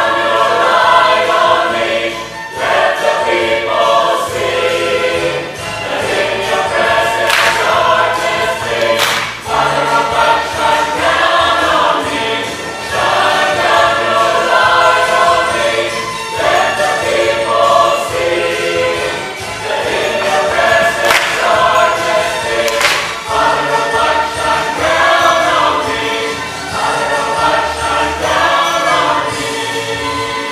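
Church choir singing together in phrases of a couple of seconds, over an accompaniment with a bass line and a few sharp hits.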